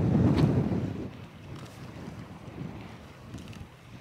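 Wind buffeting the microphone, loud for about the first second, then dropping to a quieter, uneven blowing.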